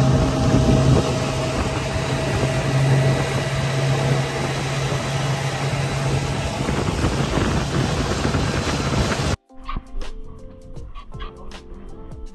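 Fishing boat's engine running steadily under way, a loud rushing noise with a low hum over it. It cuts off abruptly about nine seconds in, leaving quieter background music with light clicks.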